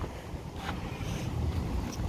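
Wind buffeting the microphone: a low, unsteady rumble.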